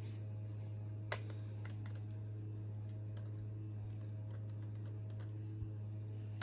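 Small plastic clicks and taps as a doll is handled on a plastic toy balance beam, with one sharper click about a second in. A steady low hum runs underneath.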